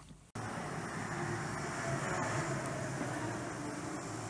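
A short silence, then from a fraction of a second in, the steady background hum and hiss of a shop interior.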